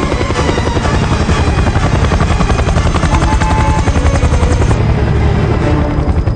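Helicopter in flight, its rotor blades chopping rapidly and steadily over the engine's drone, loud throughout.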